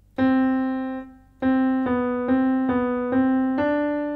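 Piano playing a single-note right-hand melody around middle C: C, C, B, C, B, C, D. The first C is held for about a second, the next five notes follow at an even pace, and the closing D rings on.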